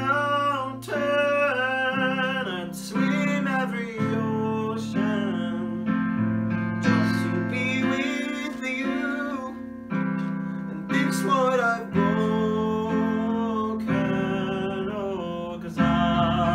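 Song with strummed acoustic guitar, its chords changing about every second, and a wavering vocal melody above.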